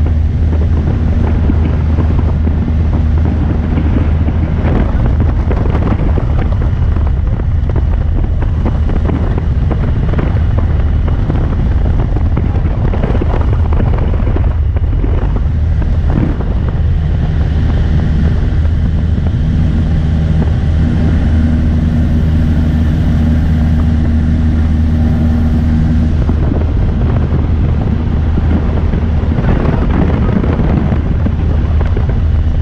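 Single-engine high-wing light aircraft in cruise flight, heard from inside the cabin: the engine and propeller give a loud, steady drone with a low hum and higher overtones, mixed with the rush of wind past the airframe.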